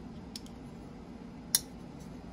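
Liong Mah Field Duty folding knife with carbon fiber handle and bolster lock: a faint click, then about one and a half seconds in a single sharp metallic click as the blade snaps shut.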